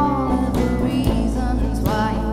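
Live acoustic-rock band playing a song: acoustic and electric guitars, bass and drum kit, with a woman singing the lead.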